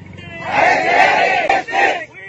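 A crowd of protesters shouting a slogan together. The loud group shout starts about half a second in, and a second shout follows near the end.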